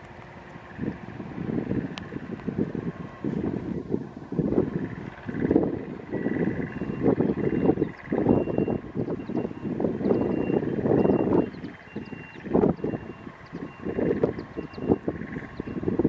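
Wind buffeting the microphone in uneven gusts, with a faint high beep repeating through the second half like a machine's warning alarm on the site.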